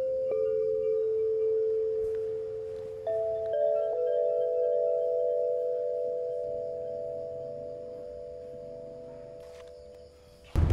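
Suspense film score: a few long, held ringing tones, with new notes entering about three seconds in and the whole sound slowly fading toward the end.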